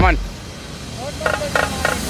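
Mostly people's voices: a short spoken call right at the start, a brief lull of low background noise, then voices starting up again near the end as a chant begins.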